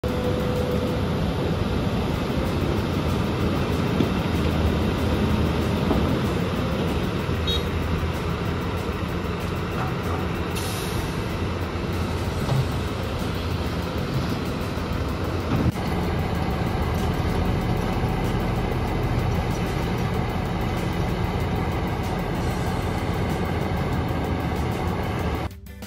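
Volvo EC330B LC hydraulic excavator at work digging and loading rock: its diesel engine runs steadily under hydraulic load. A single sharp knock comes about two thirds of the way through.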